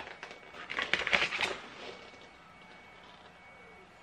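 Crinkling of a crisp packet being handled, a cluster of crackles about a second in that then fades to quiet.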